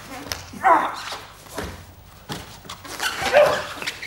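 Two short, loud vocal cries from a grappler straining, one about half a second in and another about three seconds in, with a few sharp slaps and knocks of bodies on the foam mat in between.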